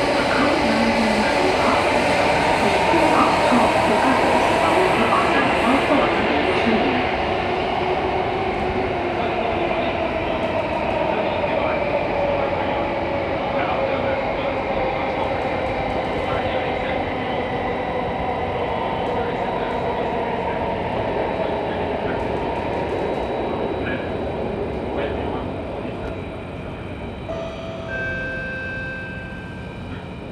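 Running noise heard from inside a carriage of an Alstom Metropolis C830 metro train, with a motor whine that slowly falls in pitch. The noise eases off near the end as the train slows for the next station, and a few short stepped tones sound in the last seconds.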